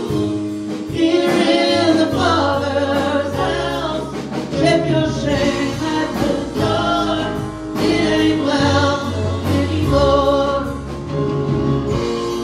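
Live gospel worship music: a group of singers with a church band, drums striking steadily under held bass notes.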